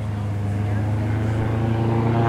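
Rescue airboat's engine and propeller running steadily as it comes head-on across open water, growing slightly louder as it nears.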